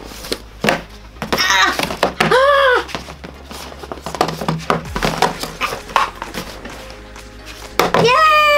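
Inflatable vinyl boxing gloves knocking and bumping against small cardboard boxes and a tabletop: a run of irregular light knocks and rubbing. A short, loud, rising-and-falling squeal comes about two seconds in.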